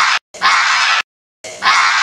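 A teenage boy's loud, raspy scream in two bursts, each cut off suddenly, with dead silence between.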